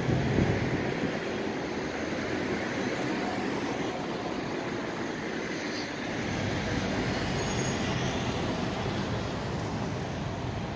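Steady city traffic noise: an even hum of vehicles on a busy avenue, with no single standout sound.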